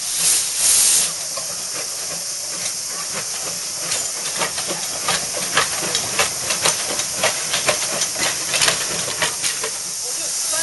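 Small vintage steam locomotive drifting in slowly, with steam hissing all along and a louder gush of steam in the first second. From a few seconds in come irregular metallic clicks and knocks from its wheels and running gear, two or three a second, as it comes to a stop.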